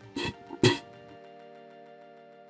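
Three short, sharp sounds in the first second, the last the loudest, followed by soft steady background music.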